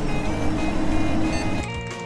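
Background music with a loud rushing transition sound effect laid over it, which cuts off suddenly about a second and a half in.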